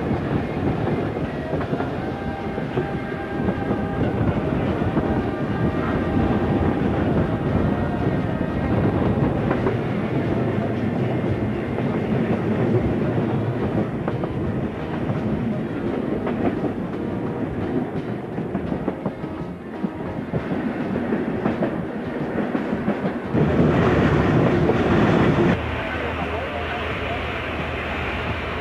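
Steam-hauled train running on jointed track, heard from on board: a steady rumble with the clickety-clack of wheels. Near the end comes a louder sustained blast of about two seconds that stops abruptly.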